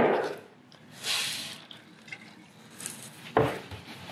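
Cloth rag rubbing a shellac finish onto a bare wooden board, with the finish squirted from a plastic dispensing bottle. A short hiss comes about a second in and a soft knock just before the end.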